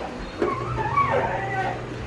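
An animal's high whining call, wavering up and down in pitch for about a second and a half, over a steady low hum.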